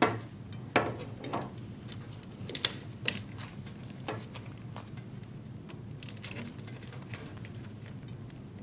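Metal drapery pins clicking and tapping against the curtain rod's small hardware carriers as they are hooked in one by one. It is an irregular scatter of sharp little clicks, most of them in the first five seconds, with the loudest about two and a half seconds in.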